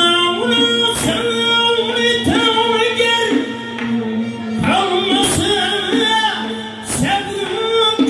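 Live Uzbek folk music: a man singing a wavering melody into a microphone, accompanied by a plucked long-necked lute, a doira frame drum and an accordion.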